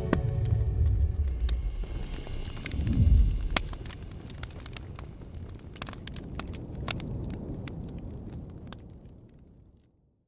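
Fire burning in a rusty metal drum: scattered crackles and pops over a low rumble of flame, which swells about three seconds in and then fades out near the end.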